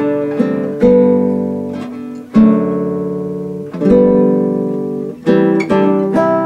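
Nylon-string classical guitar played fingerstyle: slow chords, each plucked and left to ring out and fade over about a second and a half, then quicker picked notes near the end.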